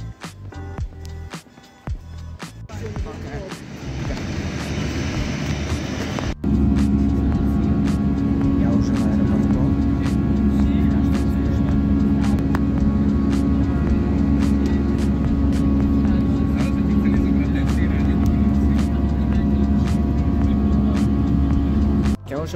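Airliner engine noise heard inside the passenger cabin: a loud, steady low drone with a few held tones over it. It cuts in suddenly about six seconds in and is the loudest thing here.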